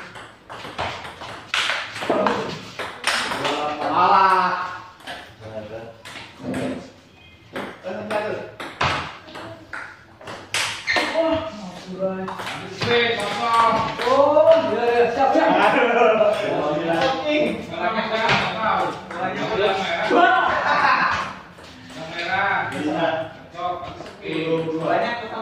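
Table tennis ball clicking off the paddles and bouncing on the table in quick rallies, a run of sharp clicks. Men's voices talk and call out between points, loudest in the second half.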